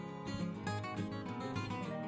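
Background music led by a strummed acoustic guitar, keeping a steady rhythm.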